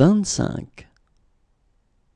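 Speech only: a voice saying one word, the French number "vingt-cinq" (twenty-five), over about the first second, then near silence.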